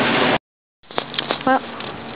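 Loud roadside traffic noise that cuts off abruptly into a moment of dead silence. After that comes a much quieter outdoor background with a few light clicks and a woman's voice.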